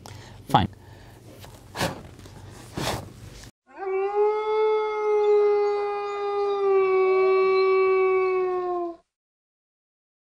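A single long howl, like a wolf's, held at one pitch for about five seconds: it rises quickly at the start, sags slightly near the end and cuts off suddenly. Before it come a spoken word and a few short knocks.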